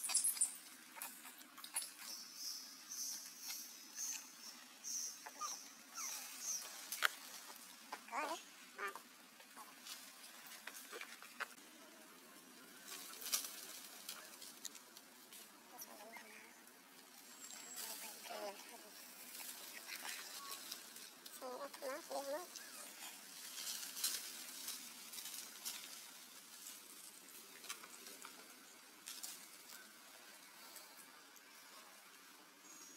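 Macaques giving a few short, quavering calls, with scattered small clicks throughout. A thin high tone sounds for a few seconds near the start.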